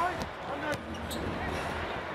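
Basketball being dribbled on a hardwood court, with scattered short bounces over steady arena crowd noise.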